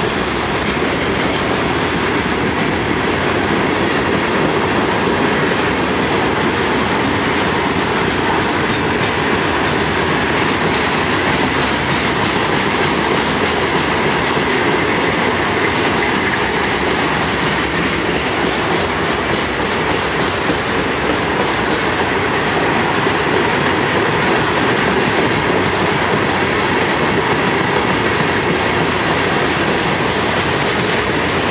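Loaded rock hopper cars of a freight train rolling past, a steady rumble of steel wheels on rail with repeated clicking as the wheels cross rail joints.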